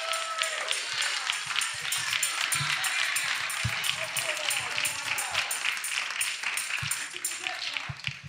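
Church congregation clapping and calling out, a dense patter of claps with music underneath that dies down near the end.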